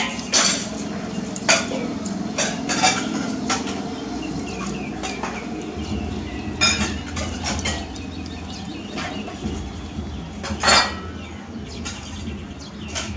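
Irregular sharp clinks and knocks, about ten of them at uneven gaps, the loudest near the end, over a steady background hum; a low rumble joins about halfway through.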